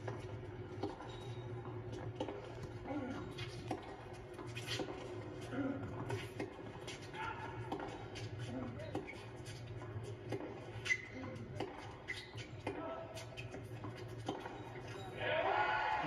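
Court sound of a college tennis match heard through a TV's speaker: a steady hum under faint voices, with short, sharp pops of racket hitting ball scattered through it.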